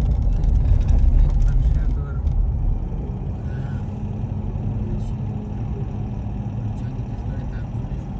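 Car driving on a road, heard from inside its cabin: a deep engine and road rumble, strongest for the first two seconds and then steady, with a faint steady hum.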